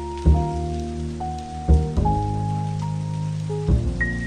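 Slow, soft jazz music, with held chords and a low bass note that change every second or two, over steady rain.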